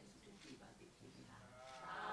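Near silence with faint, indistinct murmured voices; near the end a low drawn-out voice rises in pitch.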